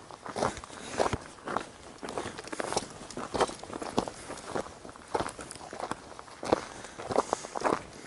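Footsteps walking over gravel and dry weeds, a string of short irregular steps about two a second, with a light rustle of grass.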